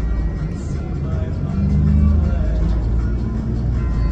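Background music over the low rumble of a bus in motion, the rumble swelling louder about halfway through.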